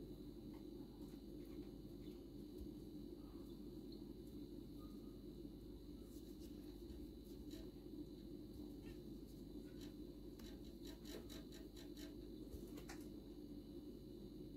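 Near silence: faint steady room hum with scattered faint clicks, including a quick run of them about ten to thirteen seconds in.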